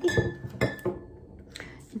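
Glass bottles of lemonade clinking as they are set down and moved on a table: a few sharp clinks in the first second, one leaving a brief glassy ring.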